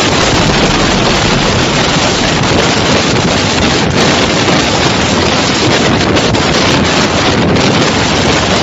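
Typhoon wind driving heavy rain, a loud steady rush of noise with the gale buffeting the microphone.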